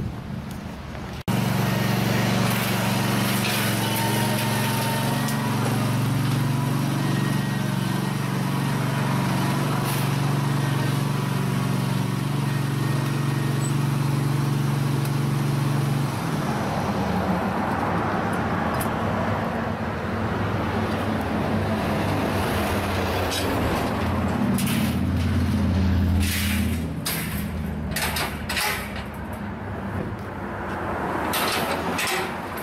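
Small engine running steadily, then after a cut running again with shifting pitch, with several sharp metallic clanks near the end.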